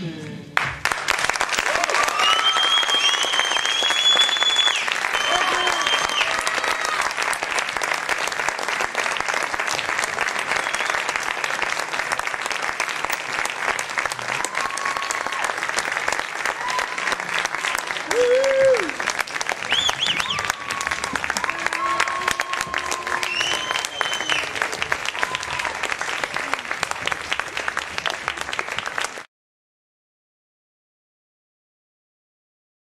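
Theatre audience applauding and cheering, with high whoops and shouts over steady clapping. It starts as the music ends and cuts off suddenly near the end.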